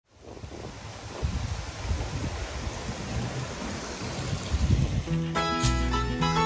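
Gusty wind rushing over the microphone of a camera moving along a road, with a low buffeting rumble. About five seconds in, a song begins.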